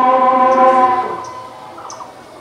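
A man's voice chanting in one long held note that fades away in the second half, the drawn-out chant of an imam leading Eid prayer.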